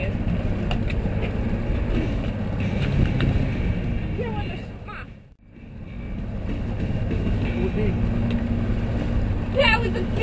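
Twin 200 hp outboard motors running on a moving fishing boat, a steady low drone mixed with wind and water noise. It fades out briefly at about the middle and fades back in.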